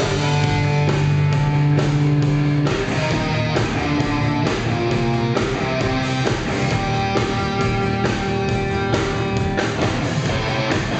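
Rock band playing live, electric guitar leading with held notes that change every second or so over bass guitar.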